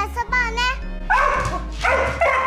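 A dog barking twice, about a second in and again near the end, over background music.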